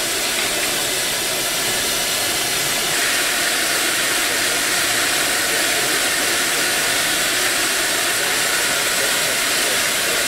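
Steady hiss of steam from the standing steam locomotive GWR Castle Class 4-6-0 no. 7029 Clun Castle, growing louder and brighter about three seconds in.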